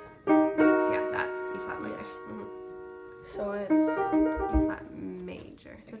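Upright piano chords, the E-flat triad being tried: a chord struck about a quarter second in and left to ring and fade, then several quick chord strikes about three and a half seconds in, with quiet talk over them.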